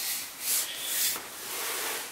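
Rubbing and scraping handling noise in a few swells as the metal LED light bar is shifted against its cardboard box.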